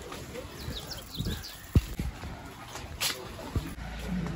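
Busy market-street ambience: a murmur of passers-by's voices, scattered footsteps and knocks, and a brief flurry of high chirps about a second in.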